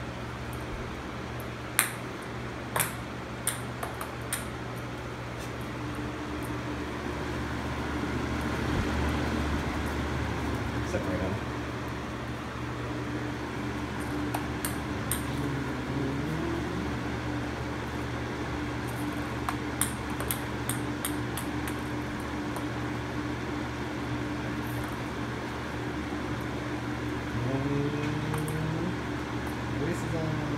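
Lasko Wind Machine floor fan running steadily with a low hum, ping pong balls riding its front grille. Light sharp ticks of the balls knocking against the grille come several times in the first few seconds and again in a cluster around twenty seconds in.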